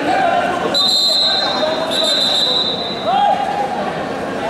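Referee's whistle blown twice in a large hall: a short blast about a second in, then a longer one of about a second, with a man's voice talking underneath.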